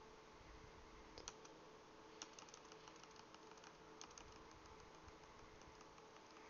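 Faint computer keyboard typing: scattered soft key clicks in short runs, over a low steady hum.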